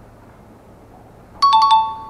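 A short, loud two-tone chime about a second and a half in: four quick metallic strikes, a higher note then a lower one that rings on briefly.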